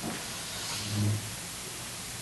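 A pause in the talk: steady hiss of room and microphone noise, with a brief faint low hum about a second in.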